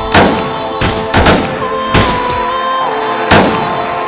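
Dramatic film-score music with held tones, cut by four or five sharp gunshots from the survivors' pistols and shotgun, spaced irregularly across the four seconds.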